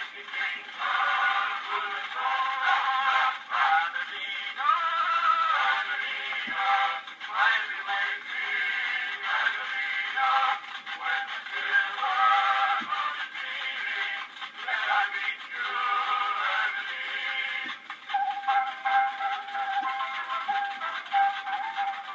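A 1901 Edison Gold Molded wax cylinder playing on an Edison cylinder phonograph through its horn: a tinny acoustic recording of a sung song with accompaniment, with no bass and nothing above the upper middle range.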